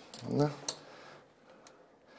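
A brief low vocal sound, then a sharp click and a fainter click later, as a thin tool is worked into the latch of a door that has only fallen shut.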